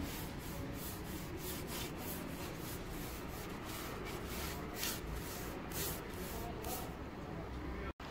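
Paintbrush rubbing white paint onto wooden furniture in a quick run of short, scratchy strokes, about three a second. The strokes stop about a second before the end.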